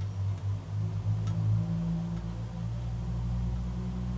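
A steady low engine hum with a few faint clicks, swelling slightly about a second in.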